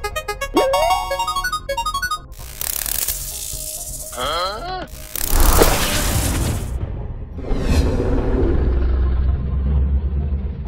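Cartoon sound effects over music. A ticking musical run ends about two seconds in. A rising whistle, hiss bursts and a wobbling swoop follow. About five seconds in comes a loud crackling electric surge over a deep rumble as the monster powers up, and a low rumble holds near the end.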